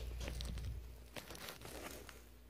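Quiet room with a faint low hum that fades out about a second in, and a few soft clicks and light rustles.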